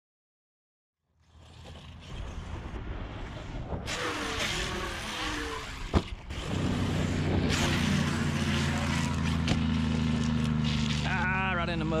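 Motor running over dirt with wind and ground noise. There is a sharp knock about halfway in, after which it settles into a steady low hum.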